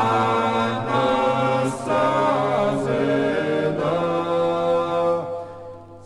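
Low male voices singing Orthodox church chant a cappella in several parts, holding chords that change about once a second, with a short dip in level near the end.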